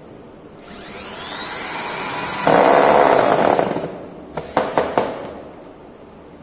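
Electric drill spinning up with a rising whine, then boring a hole into the door frame: louder for about a second while the bit bites, before it winds down. A few sharp knocks follow.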